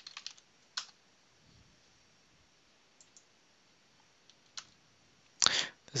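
A few scattered computer mouse and keyboard clicks: a quick cluster at the start, one just under a second in, a close pair about three seconds in and one more a little later, with a quiet room between them.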